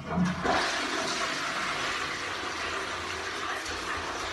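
A toilet flushing: the water starts suddenly and then runs steadily.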